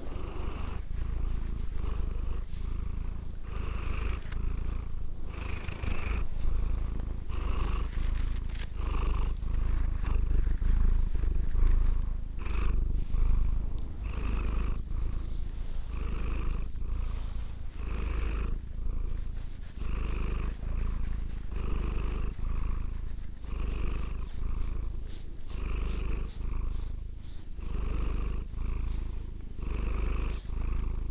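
Domestic cat purring steadily close to the microphone, the purr swelling and easing in a regular cycle about every two seconds as the cat breathes in and out.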